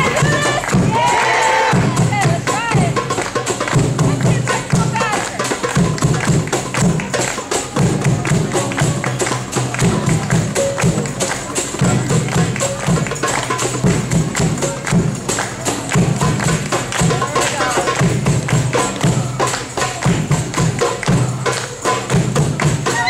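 Live Middle Eastern hand drumming on frame drum and goblet drum: deep bass strokes about once a second under a dense run of fast, sharp strokes in a steady rhythm. A voice calls out in wavering cries during the first few seconds.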